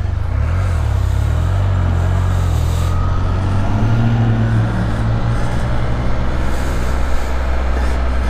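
Can-Am Spyder F3's Rotax 1330 three-cylinder engine pulling away and accelerating, its note rising about three to five seconds in, with steady wind and road noise over it.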